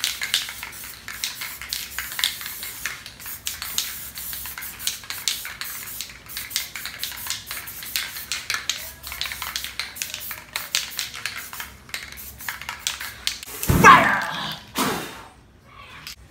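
Aerosol spray paint cans hissing in short bursts, with many small clicks and taps from the cans and hands on the paper. Near the end the loudest sound is a whoosh as the wet paint is set alight and flares up.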